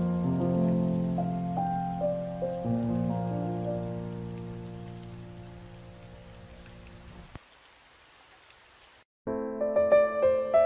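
Solo piano playing slow sustained chords that fade out over about seven seconds, leaving only a faint hiss. A brief gap follows, then a new piano piece begins near the end.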